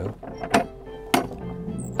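Iron latch of a wooden gate clicking twice as the gate is worked open, with soft background music underneath.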